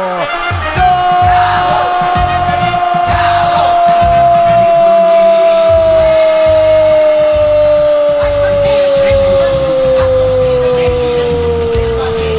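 A radio commentator's long, held goal cry for a just-scored goal: one sustained note that starts about a second in and slowly sinks in pitch, over a goal jingle with a steady beat.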